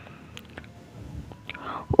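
A pause in a chanted Qur'an recitation: faint room noise with a few small mouth clicks and an in-breath, then the reciting voice starts again right at the end.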